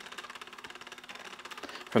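Fixed-spool fishing reel being cranked by hand, its gearing making a fast, even ticking whir as line winds onto the spool.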